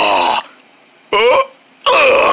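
A person's voice making comic gagging and groaning noises for a puppet character: a drawn-out groan at the start, a short one a little past a second in, and another loud one beginning near the end, with quiet gaps between.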